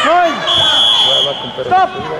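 A short, steady, high-pitched whistle blast lasting just under a second, starting about half a second in, typical of a wrestling referee's whistle, over raised voices.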